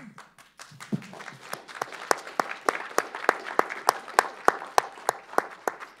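Audience applause that starts about half a second in and builds, with one set of claps standing out at an even pace of about three a second.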